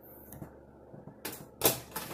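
A microwave oven's door being opened: a short click of the release, then a louder clunk about half a second later as the latch lets go and the door pops open near the end.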